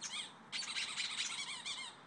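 Rubber squeaky dog toy being squeezed in quick repeated squeaks, each bending up and down in pitch. There is a short burst at the start, then a longer run of squeaks from about half a second in until just before the end.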